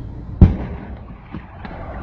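Anti-hail cannon firing: one loud boom about half a second in, with a short rumbling tail, then a couple of faint knocks.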